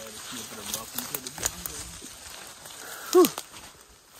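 Leaves and branches brushing and scattered twigs snapping as someone pushes on foot through dense saplings, with a loud exhaled "whew" about three seconds in.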